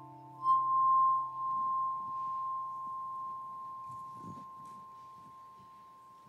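A glass instrument sounds one clear high note that rings on and slowly fades, over the dying lower notes of the piece's final chord.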